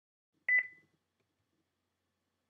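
Two quick electronic beeps at the same high pitch, close together about half a second in, fading out quickly.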